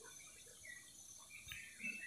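Near silence: faint room tone with a few faint, short high-pitched sounds in the background.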